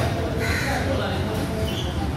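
Busy food-court ambience: overlapping background chatter of diners, with a short, harsh sound about half a second in.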